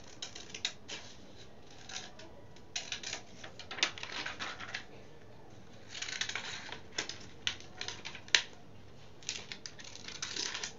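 Scissors snipping around a DTF transfer film sheet: irregular runs of crisp cuts and rustling of the stiff film, with a few sharp clicks of the blades, the sharpest late on.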